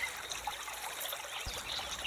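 Faint steady hiss with a thin high whine running through it, like trickling water, and a soft click about one and a half seconds in.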